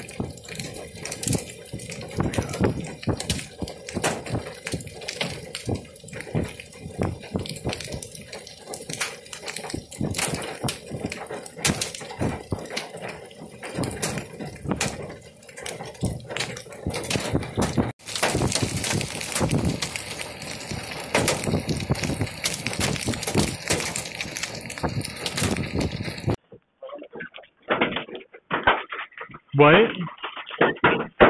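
Indistinct voices over a dense, irregular crackle of clicks and rustling. Near the end the sound cuts abruptly to a duller, muffled recording with short bursts.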